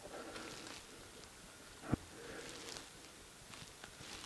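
Faint movement noises of someone in a quiet mine tunnel, with one short soft thump about halfway through.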